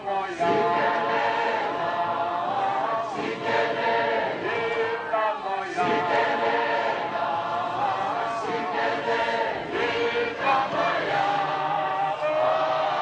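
Many voices singing together in harmony, a choral song in held phrases that break off and start again every second or two.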